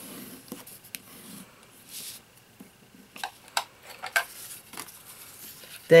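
Bone folder rubbed along the fold of a cardstock card to crease it, then paper being handled and slid on a work mat, with a few light clicks and taps.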